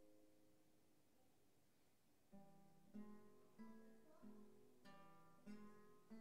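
Two classical guitars playing a duet: a held chord fades away over the first second and a half, then after a short pause plucked notes and chords come back in, struck about every half-second.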